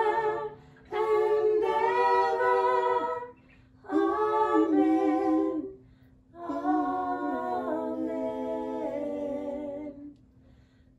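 A small group of women singing slow, drawn-out phrases of a hymn, four long phrases with short breaks between, over a steady low held note.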